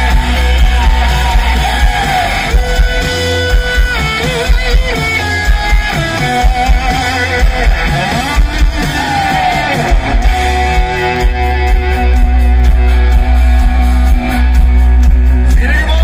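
Rock band playing live through a loud festival PA: distorted electric guitars over heavy bass and drums, with sung lines and held notes that bend in pitch.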